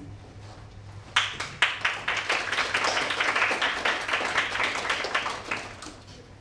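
An audience clapping: a couple of separate claps about a second in, then a steady round of applause lasting about four seconds that fades away near the end. A steady low hum runs underneath.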